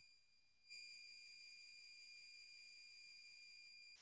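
A faint, steady high-pitched ringing tone with a few overtones above it. It starts about a second in and cuts off abruptly.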